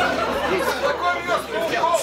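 Overlapping voices: several people talking at once, indistinct chatter.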